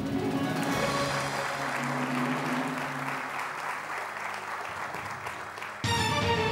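Studio audience applause over game-show music, greeting a correct answer. Near the end the music cuts abruptly to a new, louder cue.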